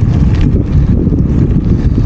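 Wind buffeting a handheld 360 camera's microphone on a moving bicycle: a loud, uneven low rumble.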